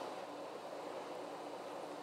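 Quiet room tone: a faint steady hiss with a low hum and no distinct sound events.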